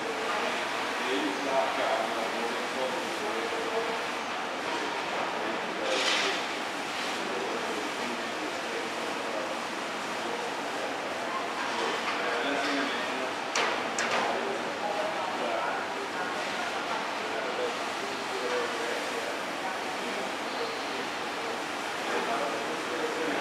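Indistinct, muffled voices over a steady background hiss, with a brief sharper noise about six seconds in and two more near fourteen seconds.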